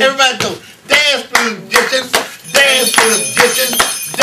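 A man's voice shouting a repeated "Dance, dance!" chant in short, rhythmic bursts.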